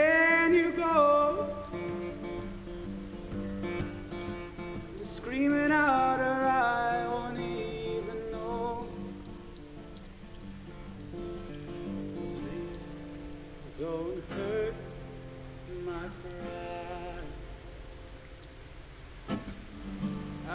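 Solo acoustic guitar fingerpicked in a slow song. A man's voice holds sung notes that slide downward in the first two seconds and again about five seconds in, and guitar alone carries the rest.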